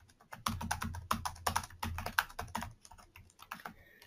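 Typing on a computer keyboard: a quick run of keystrokes starting about half a second in, thinning out near the end.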